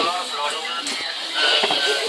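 Indistinct voices of several people, some of them drawn out and sing-song.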